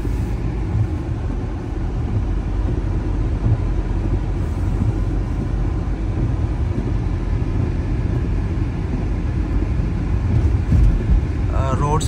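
Steady low rumble of a car driving, its road and engine noise heard from inside the cabin on a slushy, snow-covered road.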